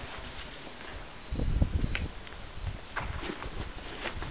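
Caucasian shepherd puppies scuffling on sandy gravel: paws scraping and stepping on the ground, with a low rumbling scuffle about a second and a half in and a couple of sharp clicks.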